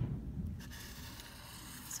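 Writing on paper: a low thump right at the start, then about a second and a half of steady scratching strokes.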